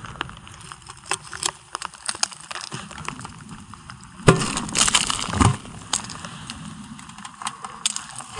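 Crackling and snapping of a quarter-inch glaze of ice as an iced-over mailbox is broken open by hand. Scattered small cracks and clicks run throughout, with two louder cracking, scraping noises about four and five and a half seconds in.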